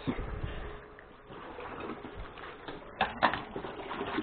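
A 12 V DC gear-motor-driven diaphragm pump running steadily as it pumps water. Two short, sharp sounds come about three seconds in.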